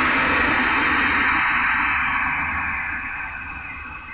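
A large audience applauding, starting suddenly just before and fading slowly away.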